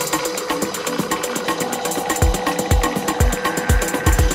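Electronic dance music played live on synthesizers and drum machines: fast, even hi-hat ticks over a held synth tone. About halfway through, a deep kick drum comes in at about two beats a second.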